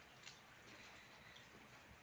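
Near silence: a faint steady hiss of room tone, with one tiny click about a quarter second in.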